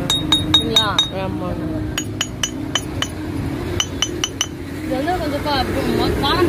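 Granite grinding mortar being tapped with a small hand-held striker: three quick runs of clinking taps, each a short, high, clear ring, at about five taps a second. The taps test how the stone rings. A voice starts near the end.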